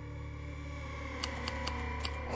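Low, steady drone of the horror background score, with a few quick, irregular clicks in the second half.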